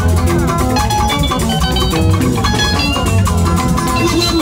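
Live highlife band music led by electric guitar playing quick, short notes over a bass line and a steady beat.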